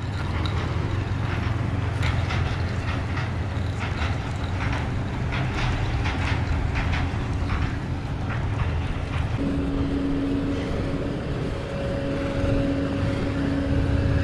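Utility vehicle engine running as the side-by-side drives slowly across gravel, towing out a long water line, with gravel crunching underfoot. A steady hum joins in about nine seconds in.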